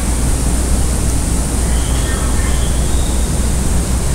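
Steady hiss across the whole range with a constant low hum underneath: the background noise of the recording, heard during a pause in the narration.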